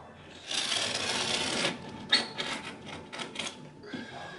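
Carpet being cut with a sharp blade at the wall edge: a rasping cut about a second long, then a run of sharp clicks and snaps as the carpet is worked along the wall.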